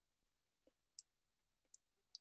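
Near silence broken by two faint, short clicks, one about a second in and one near the end: a computer mouse button being clicked.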